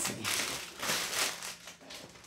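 Plastic packaging rustling and crinkling in two or three bursts as items in a box are rummaged through.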